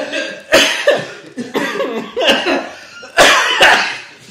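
A man coughing several times in sharp bursts while laughing: a cough just after the start and two more close together about three seconds in.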